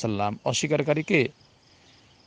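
A man's voice preaching for about a second, then breaking off into a pause. A faint, high, steady sound carries on under the pause.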